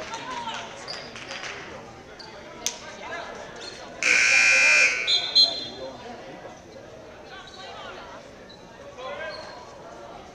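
Gym scoreboard buzzer sounding once, loud and steady for just under a second about four seconds in, signalling the end of the quarter, over voices in the gym.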